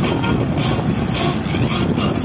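Steady road and engine noise of a car driving at highway speed, heard from inside the cabin.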